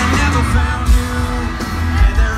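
Live band playing amplified through an arena PA, with a singer's voice over it. A heavy bass and drum beat comes in hard right at the start, with hits roughly every half second.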